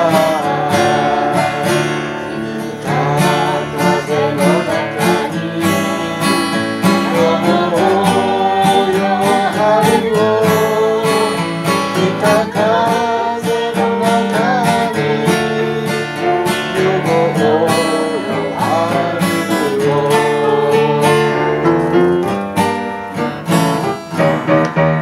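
A small mixed group of men's and women's voices singing a song together, accompanied by a strummed acoustic guitar with a steady rhythm.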